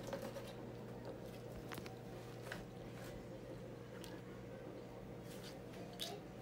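Faint chewing as a person eats a piece of food with the mouth closed, a few soft wet mouth clicks spread through, over a steady low hum.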